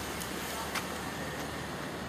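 City street ambience: a steady hiss of traffic noise, with a few faint clicks.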